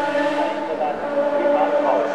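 Race car engine running hard up the hillclimb course, heard as a steady high-revving tone whose pitch shifts slightly now and then.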